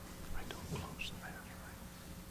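Two people whispering briefly to each other, faint, over a steady low hum in a quiet room.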